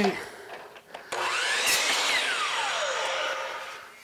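DeWalt sliding compound miter saw starting about a second in, its motor whine rising in pitch as the blade cuts a length of crown molding in half. It then winds down with a falling whine and fades out near the end.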